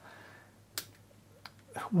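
A quiet pause broken by one sharp click about three-quarters of a second in and a fainter click about a second later.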